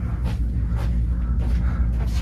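A steady low rumble in the room, with a few faint steps of sneakers on a concrete floor as someone walks across it.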